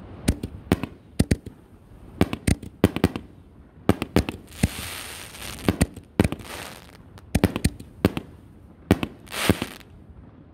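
Raccoon Fireworks 5-inch canister aerial shells bursting: a long string of sharp, irregular bangs and pops, with short bursts of crackling hiss around the middle and again near the end.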